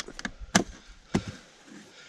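A few sharp clicks and knocks from hands handling a hard plastic rifle case, the clearest about half a second in and another just after a second.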